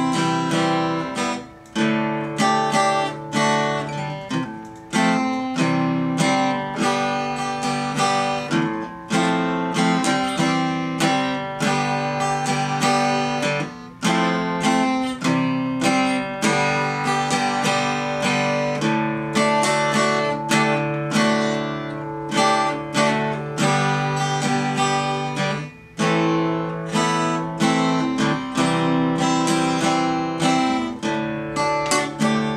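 Ovation acoustic guitar played solo: an instrumental of picked notes over ringing chords, with short pauses between phrases.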